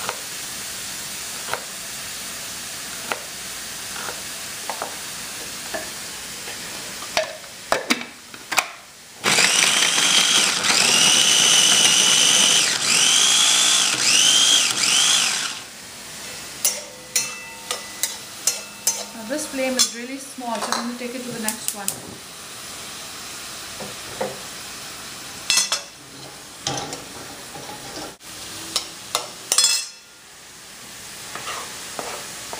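Chopped onions frying in oil in a kadai with a steady sizzle. About nine seconds in, a food processor runs loudly for about six seconds, grinding ginger and garlic into paste, its motor whine rising in several short pulses near the end; afterwards, scattered clicks and knocks of utensils.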